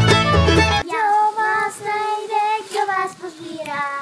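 Fiddle-led instrumental music that cuts off abruptly just under a second in, followed by a high solo voice singing a Czech folk song unaccompanied.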